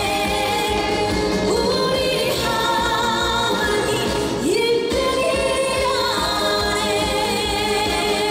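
A woman singing a Korean trot song live into a handheld microphone, her voice wavering with vibrato over loud instrumental accompaniment, with a quick upward slide in pitch about four and a half seconds in.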